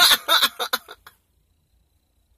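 A woman laughing in short bursts that stop abruptly about a second in.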